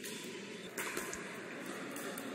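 Steady hiss of indoor court room noise, with a few faint pops of pickleball paddles hitting the plastic ball near the middle.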